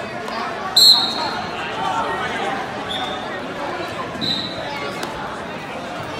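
Spectators talking in a gym, with a short, loud referee's whistle blast about a second in and two shorter, fainter whistle blasts around three and four seconds in.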